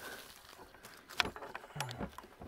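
A few light clicks and knocks from handling a wooden marten trap box, the sharpest about a second in, with a brief low vocal murmur at the very end.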